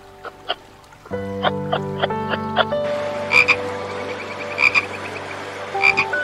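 A frog croaking: short loud calls about every second and a half from about three seconds in, with a faint rapid pulsing between them.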